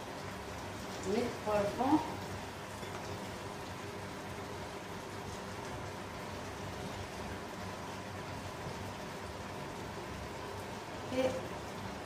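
Steady soft sizzling of onions and chicken legs cooking in olive oil in a pot on the heat.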